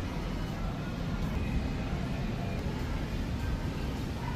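Steady low rumble of supermarket ambience, with faint background music and distant voices.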